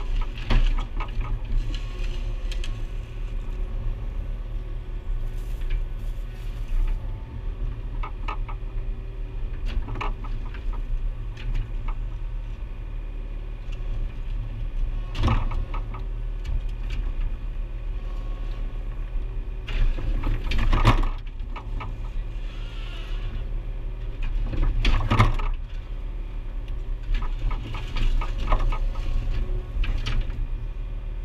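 Mini excavator's diesel engine running steadily, heard from inside the cab as the bucket digs, with scattered knocks and scrapes of the bucket in soil and stones. The loudest knocks come about two-thirds of the way through.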